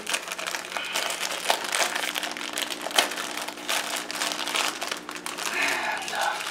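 Thin plastic fish shipping bag crinkling and crackling as it is cut open near the top with a sharp blade and handled, irregular and continuous.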